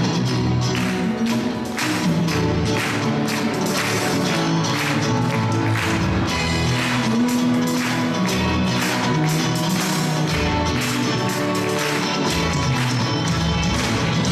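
Live church band playing an upbeat song passage without vocals: guitars, bass and piano over a steady percussion beat.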